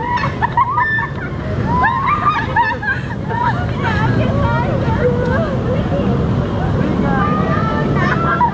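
Several people talking at once in short, lively bursts of speech, over a steady low background rumble.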